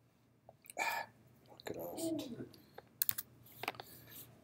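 Sharp clicks of a tablet pen, two or three near the end, after a short breath and a brief murmured hum from a man's voice.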